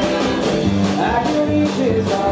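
Live band playing an uptempo country-rock number on electric guitar, acoustic guitar and upright double bass, with a steady beat of about two and a half strokes a second.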